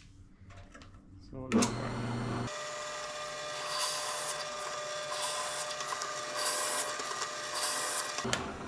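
Benchtop drill press starting up about a second and a half in and running steadily, its half-inch twist bit boring through a three-quarter-inch MDF plate. Several louder, hissing cutting spells come as the bit is fed into the board.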